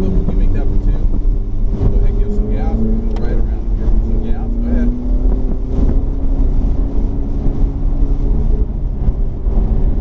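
Ferrari 488's twin-turbo V8 heard from inside the cabin, pulling steadily as the car accelerates. Its note rises slowly in pitch over the first half and then holds.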